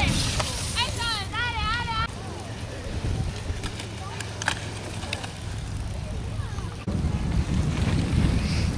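A spectator's warbling cheer in the first two seconds, then wind rumbling on the microphone with a few faint clicks, the rumble growing louder near the end.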